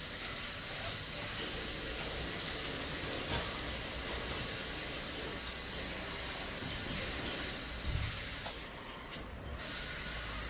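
Steel putty knife scraping and smearing wood filler on a wooden board, over a steady hiss that thins briefly near the end.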